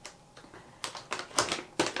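Paper gift packaging being handled: a quick run of crisp rustles and crinkles starting a little under a second in.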